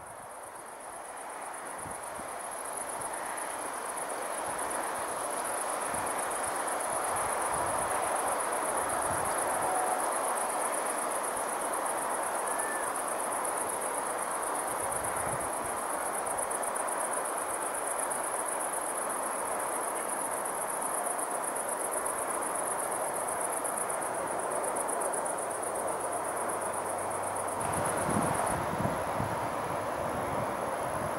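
Crickets in the meadow grass chirring in a continuous high-pitched rapid trill, over a steady distant hum. A low rumble joins near the end.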